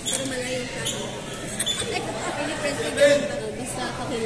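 Badminton rally: a few sharp racket strikes on the shuttlecock, over voices chattering and echoing in a large hall.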